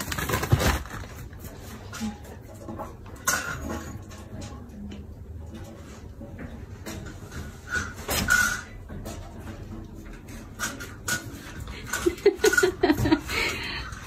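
Scattered knocks and rustling as a golden retriever picks up and carries a plastic-wrapped pack of pet pads across a tiled floor, with the dog's claws clicking on the tiles.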